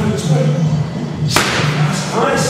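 A boxing glove punch landing on a trainer's focus mitt: one sharp smack about a second and a half in, over background music.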